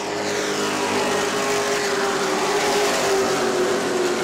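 A pack of Sportsman stock cars racing past on an asphalt oval just after a restart, many engines running at high revs together. Several engine notes overlap, and some slide down in pitch as cars go by.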